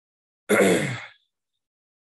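A single short breathy vocal sound from a person, about half a second long, starting about half a second in and fading away.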